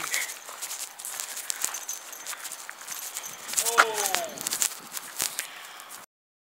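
Hooves of a walking team of Haflinger horses, with people's footsteps, on a dirt and gravel yard: irregular soft steps and crunches. A short falling voice call comes just before the four-second mark.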